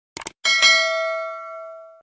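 Subscribe-button sound effect: a quick mouse click, then a bell ding that rings out and fades over about a second and a half.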